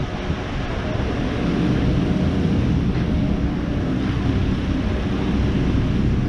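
Steady low rumble of outdoor street noise, with wind buffeting the microphone of a handheld camera carried along a city street.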